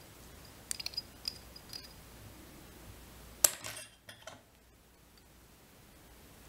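Small metal fly-tying tools clicking and clinking while a hackle is wound at the vise: a few light clinks about a second in, then a sharper click about three and a half seconds in, followed by two softer ones.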